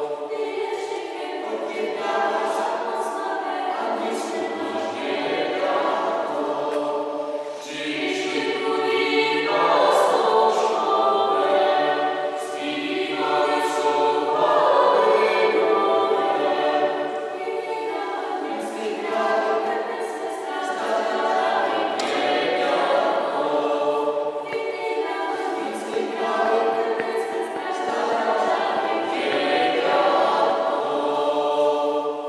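A vocal ensemble singing unaccompanied, holding sustained chords in phrases that swell and fade, loudest around the middle.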